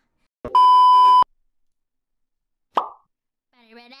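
A loud, steady electronic beep, a single pitch that starts and stops abruptly and lasts under a second, followed about two seconds later by a short pop. Singing starts near the end.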